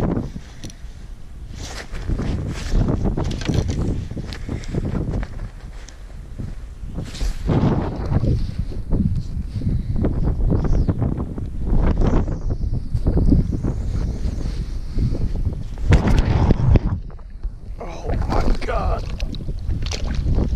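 Wind buffeting the microphone in gusts, a loud low rumble that swells and fades unevenly.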